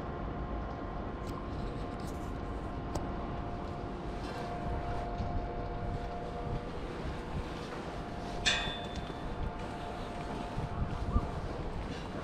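Steady low rumble with faint humming tones, and one sharp ringing metal clink about eight and a half seconds in, from the steel ladder and grating of a tower crane's lattice mast as it is climbed down.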